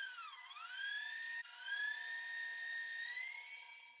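Electric stand mixer running at speed, its wire whisk beating thick sweet potato pie filling: a high motor whine that dips in pitch briefly about half a second in, then holds steady and dies away near the end.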